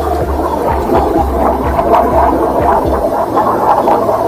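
A machine running with a steady low hum, over a scatter of small scrapes and knocks from gravel being worked in the drain.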